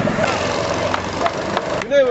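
Go-kart engines running on the track, a steady mechanical noise with people talking over it. The sound cuts off abruptly near the end.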